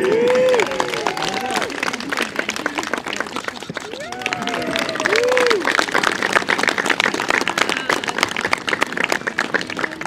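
A small crowd applauding, with rapid hand claps throughout and voices calling out in rising-and-falling cheers near the start and again about four seconds in.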